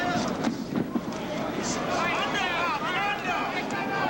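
Boxing arena crowd: a steady din of many spectators with overlapping shouts and yells rising through the second half. A few sharp knocks come within the first second.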